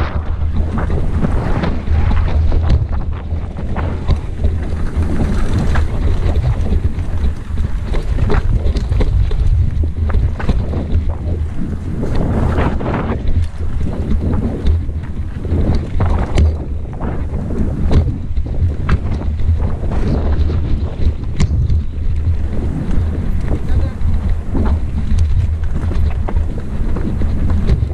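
Wind buffeting the microphone of a camera on a mountain bike riding downhill, a heavy steady rumble, with frequent short rattles and knocks as the bike jolts over a rough dirt and stone trail.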